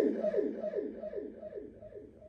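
A falling vocal cry through a microphone, repeated by an echo or delay effect: the same downward sweep comes back about three times a second, each repeat fainter, dying away.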